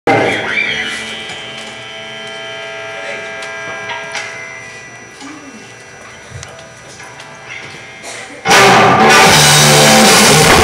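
Live rock band: a guitar chord rings out and slowly fades, with a few single notes picked over it, then about eight and a half seconds in the whole band comes in loud with drums and electric guitars.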